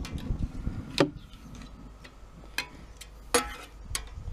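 Metal spatula clicking and scraping on a gas plancha's cooking plate while spreading oil over it: a handful of sharp, irregularly spaced clicks.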